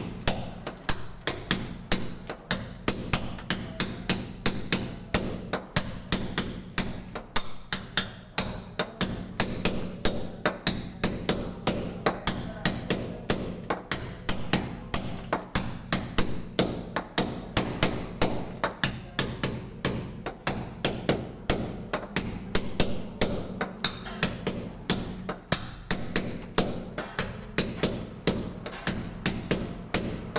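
Hammer-and-chisel blows into a plastered masonry wall, a fast, even rhythm of sharp strikes, with music in the background.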